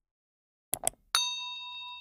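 Two quick clicks, then a bright bell ding that rings on and slowly fades: the sound effects of a subscribe-button animation, a cursor click on the button followed by the notification-bell chime.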